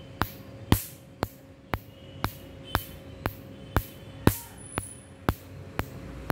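Tattoo-removal laser firing repeated pulses, a sharp snap about twice a second at a very even rate, over a faint steady hum from the machine.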